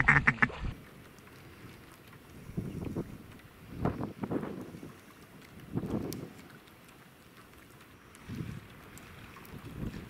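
Footsteps wading through shallow water: soft, irregular sloshing splashes, one every second or two.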